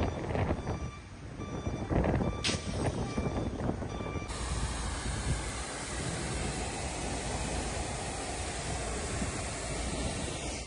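A large fire burning, with irregular crackling and popping and one sharp crack about two and a half seconds in. From about four seconds in, this gives way to the steady rushing hiss of a high-pressure fire hose jet.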